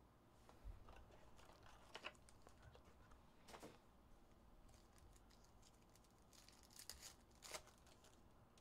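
Faint rustling and crinkling of foil trading-card pack wrappers being handled and torn open. The short rustles come about two seconds in, again at three and a half seconds, and in a cluster near the end.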